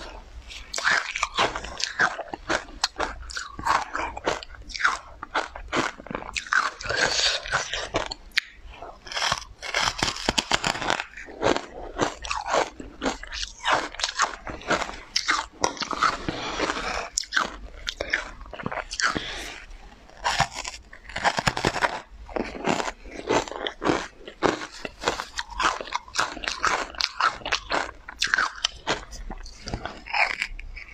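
Close-miked chewing and biting of a powder-coated cake: a dense, irregular run of short mouth clicks and smacks.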